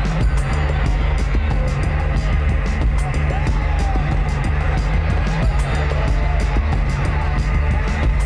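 Loud music with a heavy low end and a fast, steady beat.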